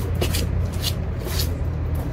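A few light scuffing footsteps of shoes on stone paving, roughly half a second apart, over a steady low background rumble.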